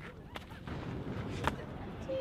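Low rumble of wind buffeting the camera microphone, with two short, sharp knocks: one about a third of a second in, the other about a second and a half in.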